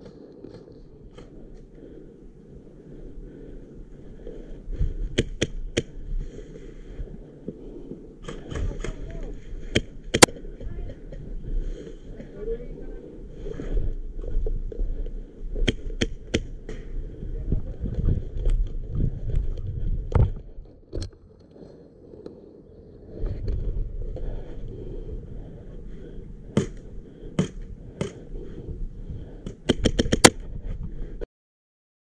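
Footsteps and camera handling while walking over grass, with scattered sharp clicks and snaps of airsoft shots and BB hits around the field.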